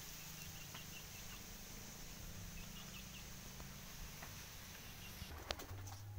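Faint outdoor ambience with a few soft, high bird chirps in short clusters of three or four, and a couple of sharp clicks near the end.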